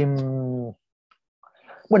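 A man's voice holding a long hesitation sound, "eh", with its pitch sinking slightly. About a second of silence follows, then he starts speaking again near the end with "bueno".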